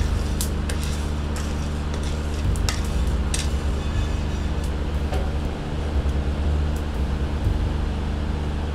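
Coffee beans being stirred in a cast iron skillet at the second crack: the wooden spatula scrapes and rattles the beans across the pan, with scattered small, sharp cracks like popcorn popping. A steady low hum runs underneath.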